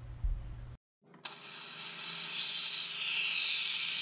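A short stretch of hands working fluffy slime in a plastic tub, with a soft pop, cuts off. About a second in, a steady, loud hiss begins: shaving foam spraying from an aerosol can onto clear slime.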